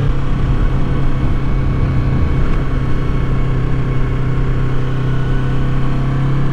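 Yamaha YZF-R3's parallel-twin engine on its stock exhaust running at a steady low cruise, heard from the rider's position with wind rumble on the microphone.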